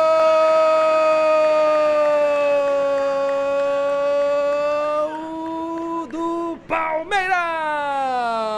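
A football commentator's drawn-out goal call, "Gooool", held loud on one high pitch for about five seconds. After a few brief breaks it turns into a second call that starts high and falls in pitch near the end.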